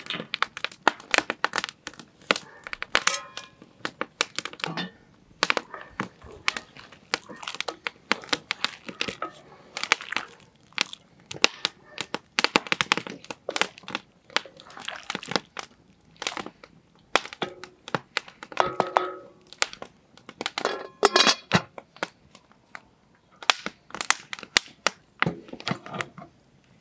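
Split-wood fire crackling, with many sharp, irregular pops and cracks.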